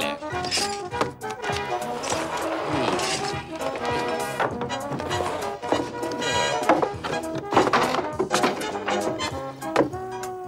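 Upbeat dance-band background music with brass, and a few short wooden knocks from a ladder being handled.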